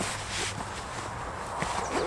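A few faint soft knocks and rustles as a fabric-covered hard case is handled on a backpack, over steady outdoor background noise. A bird chirps a few short falling notes near the end.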